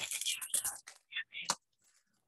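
Soft whispering without voiced tone, followed by a few light clicks about a second and a half in.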